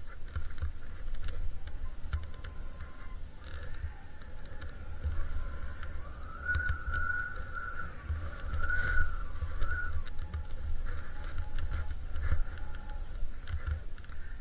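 Skis running through deep untracked snow, with wind buffeting the camera microphone as an uneven low rumble. Scattered short clicks and knocks come through, and a high wavering whine rises and falls in the middle.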